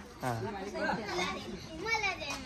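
Several voices talking over one another, among them a child's voice.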